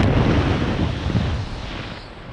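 Wind rushing and buffeting over the camera microphone during a skydive, easing off toward the end.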